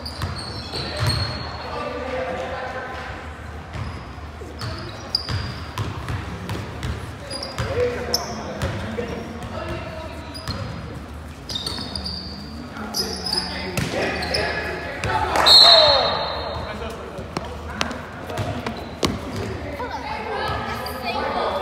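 Basketball game in a gymnasium: a ball bouncing on a hardwood floor, sneakers squeaking, and players calling out, all echoing in the large hall. The loudest moment comes a little past three-quarters of the way through.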